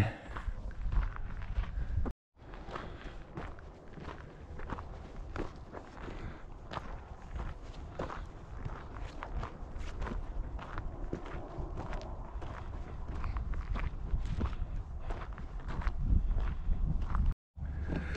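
Footsteps of a hiker walking on a dry dirt trail, an irregular run of short steps over a low steady rumble, broken by two brief gaps where the sound drops out.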